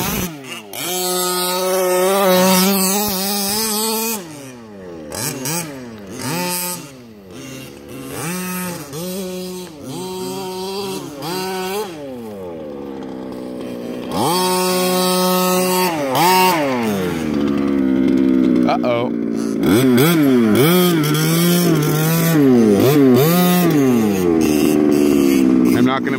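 Radio-controlled off-road truck's motor running under repeated throttle bursts, its pitch climbing and dropping about once a second. It holds longer and louder over the last third of the stretch.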